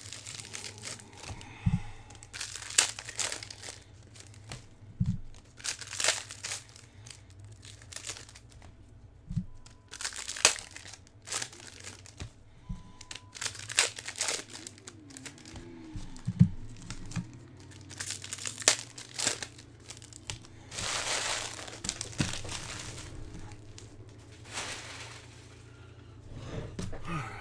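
Foil baseball card pack wrappers crinkling and tearing as packs are ripped open and the cards handled, in irregular bursts of rustling. A few soft thumps are scattered through.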